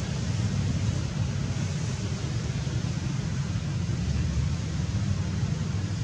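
Steady outdoor background noise: a constant low rumble with a fainter hiss above it, unchanging throughout.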